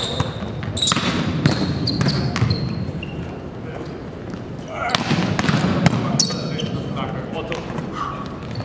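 Volleyballs being struck and passed by hand: a string of sharp slaps, several in quick succession, with a lull around the middle, ringing in a large sports hall.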